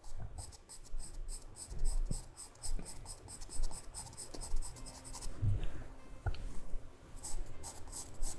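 Sharp charcoal pencil scratching on textured drawing paper in quick, short, even shading strokes, about four or five a second. The strokes stop for a moment past the halfway point and start again near the end.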